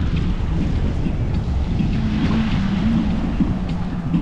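Strong wind buffeting the microphone in a steady low rumble, over the wash of choppy high-tide sea water against a rocky seawall.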